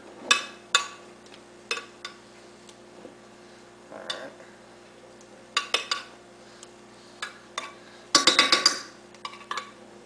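A metal spoon scraping and clinking against a square glass baking dish while it spreads thick chocolate pudding into an even layer. There are scattered single clinks, and a rapid run of clinks about eight seconds in is the loudest.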